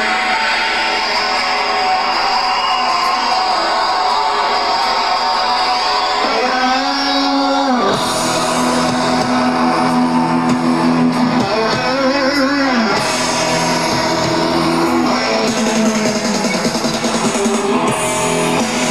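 Live rock band playing an instrumental passage led by electric guitar, with held notes that bend up and down a couple of times. Lower notes join about eight seconds in.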